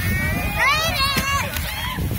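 A child's high-pitched voice calling out, rising and falling in pitch, starting about half a second in and trailing off, over a steady low rumble.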